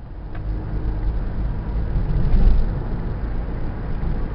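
Low rumble of a car's engine and road noise inside the cabin, swelling up over the first two seconds or so and then easing slightly.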